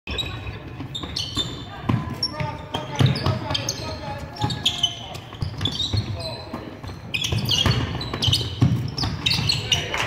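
A basketball bouncing irregularly on a hardwood gym floor during live play, with sneakers squeaking and players' voices echoing around the gym.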